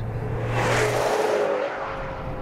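Maserati Quattroporte's turbocharged V8 driving past at speed: a rush of engine note and road noise that swells to a peak about a second in and then fades. Before it, a steady low drone.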